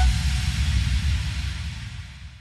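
Fading tail of an electronic intro sting: a sustained low rumble and hiss, without notes, dying away steadily.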